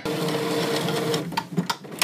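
Epson Artisan 730 inkjet printer mechanism running: a steady mechanical whir with a held hum that stops a little past a second, followed by several sharp, irregular clicks.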